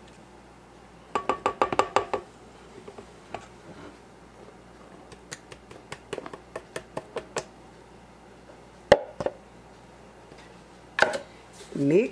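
A plastic measuring cup clicking and tapping against a stainless steel mixing bowl as flour is poured in: a quick run of clicks about a second in, scattered light taps after, and a single sharper knock about nine seconds in.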